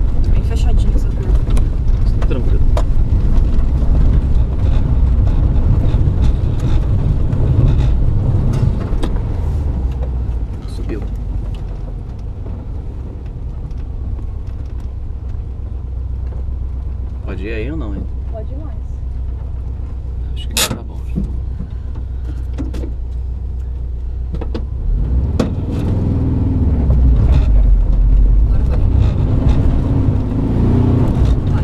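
A vehicle driving on a rough gravel dirt road: a continuous low rumble from the engine and tyres, broken by sharp knocks and rattles from the uneven surface. It is heavier at first, eases off through the middle, and grows heavier again near the end.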